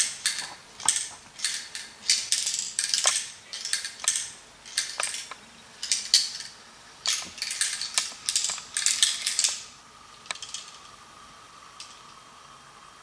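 A small ball rolling and rattling around inside a handheld LEGO maze as it is tilted back and forth, a run of short clattering bursts against the plastic bricks that dies down near the end.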